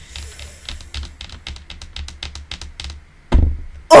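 Computer keyboard typing: a quick, uneven run of about twenty key clicks that stops a little after three seconds in, followed by one brief louder sound near the end.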